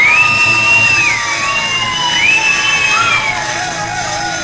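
Live audience cheering, with several high, long calls that glide up and down over the crowd noise.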